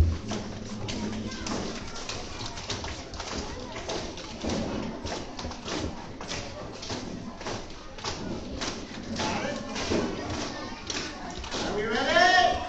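A single loud thump, then many light, irregular taps and knocks, with murmuring voices in a large hall.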